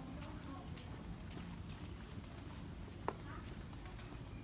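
Footsteps on a paved path, about two a second, with faint voices in the background and one sharp click about three seconds in.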